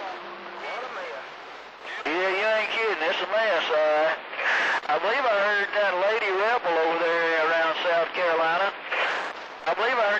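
AM CB radio receiver: about two seconds of hiss, then several stations keying up at once, their voices garbled and warbling over one another so that no words come through.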